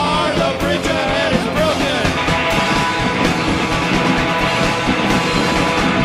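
Live punk rock band playing loud, amplified electric guitars over a steady drum beat. A sung vocal line runs until about two seconds in, leaving the instruments alone after that.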